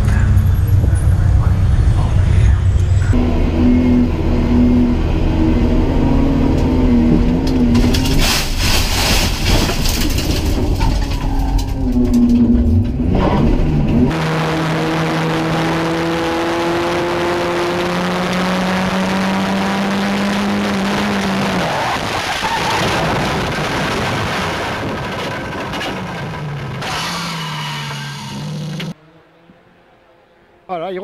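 Racing car engines running and revving across a few short clips. First a pack of saloon cars runs together with a dense, rumbling sound. From about 14 seconds in, a single-seater's engine is heard on board, held at a steady pitch with small steps up for several seconds. The sound drops to quiet for a moment just before the end.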